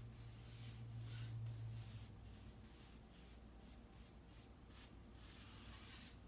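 Faint, soft swishes of a paintbrush stroking wet milk paint onto a painted wooden tabletop, stroke after stroke.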